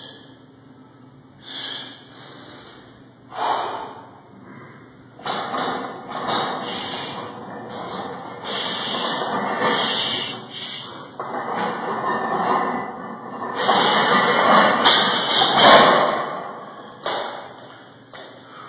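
A man breathing hard and forcefully while working under a heavy barbell in front squats, in hissing, gasping breaths. The breaths grow longer and louder through the middle and are loudest a little past three-quarters of the way through, then ease off.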